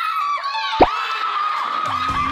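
A small group of adults shouting and screaming excitedly all at once, their high voices overlapping. There is one sharp thump just under a second in.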